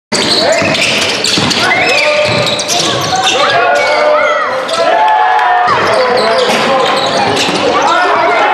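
Basketball being dribbled on a gym's wooden court, with repeated ball thuds, sneakers squeaking on the floor and voices calling out, all echoing in a large hall.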